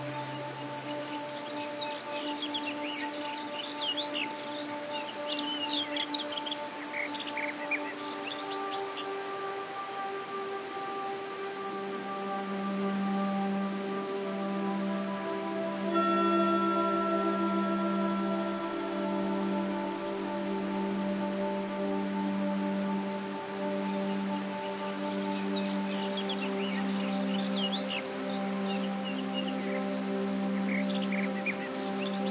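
Slow ambient background music of long, held tones that shift every few seconds, with birds chirping in the first several seconds and again near the end.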